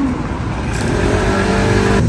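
A motor scooter riding closer along the street, its engine note growing steadily louder as it approaches.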